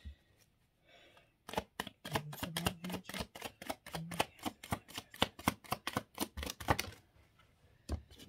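A deck of tarot cards being shuffled by hand: a quick, uneven run of crisp card snaps and clicks that starts about a second and a half in and stops about a second before the end.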